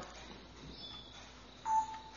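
Faint room hiss, then one short steady electronic beep near the end.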